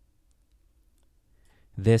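Near silence with a few faint clicks of a computer mouse scroll wheel as CT image slices are scrolled through; a man's voice starts near the end.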